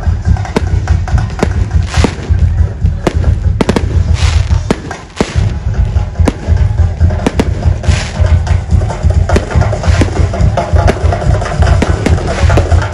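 Aerial fireworks bursting overhead in quick succession, sharp bangs about two a second, with music playing underneath.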